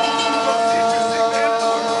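Live Celtic punk band playing loud and steady: electric guitars and drums under a male singing voice, with notes held steady beneath the wavering vocal line.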